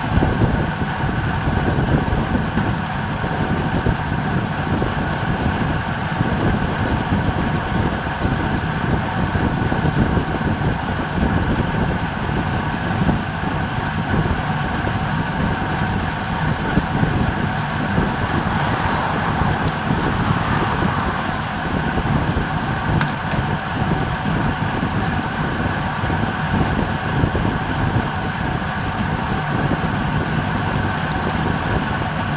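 Steady wind rushing over a bicycle-mounted camera's microphone at about 26 to 30 mph, with tyre noise on asphalt underneath.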